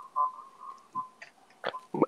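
Faint video-call audio between bits of speech: a thin, steady whistle-like tone that fades out during the first second, then a couple of brief clicks near the end.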